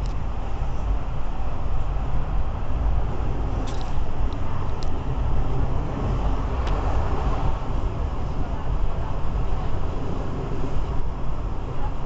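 Steady low rumble of a moving train heard from inside the carriage, its wheels running on the rails, with a few faint clicks.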